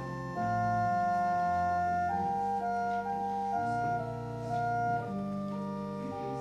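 Organ playing slow, sustained chords, one held chord giving way to the next every second or so.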